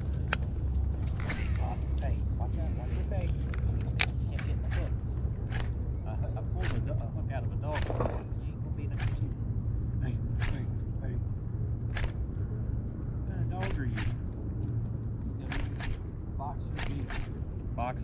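Baitcasting rod and reel being worked during a cast and retrieve: a string of sharp clicks every second or so over a low steady rumble.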